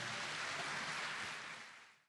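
Audience applauding in a concert hall, a steady clapping that fades out near the end.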